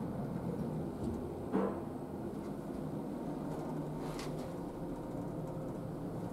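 Toshiba NEW SPACEL elevator car travelling upward between floors: a steady low hum and rumble, with a single thump about one and a half seconds in.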